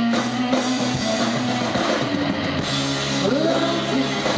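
Live rock band playing: electric guitar over a steady drum beat, with a woman's singing voice coming in near the end.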